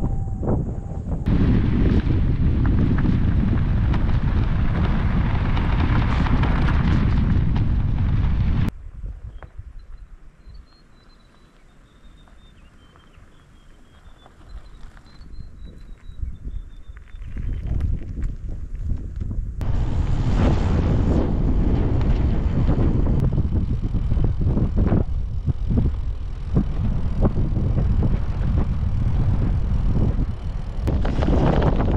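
Wind buffeting the microphone while cycling: loud, gusty rumble. About nine seconds in it drops away to a quiet stretch with faint high bird chirps, and the wind rumble builds back from about seventeen seconds and stays loud to the end.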